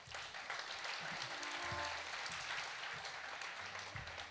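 Audience applauding in a hall: a dense, steady patter of many hands clapping.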